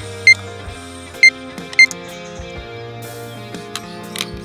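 Three short, high checkout-scanner beeps, the loudest sounds here, as miniature groceries are passed over a toy supermarket checkout, with background music running underneath.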